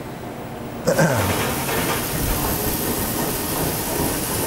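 GMI Laser III FX bridge laser starting its cutting cycle: about a second in, a loud steady rush of air cuts in with a brief falling whine at its start. This is the fume-extraction fan switching on as the laser head moves into position and the hood comes down.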